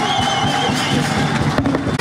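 Music played over stage loudspeakers, with held notes over a busy low accompaniment.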